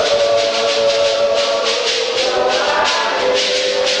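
A congregation of women singing a hymn together in long held notes, over a steady beat of shaken percussion.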